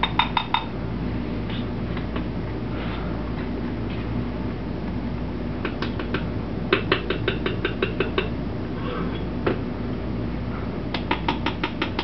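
Runs of quick, light taps of a metal beaver tail spatula against a plastic alginate measuring scoop, about seven taps a second, settling the powder in the scoop before it is leveled. There are three runs: right at the start, for a second or two around the middle, and again near the end, over a steady low hum.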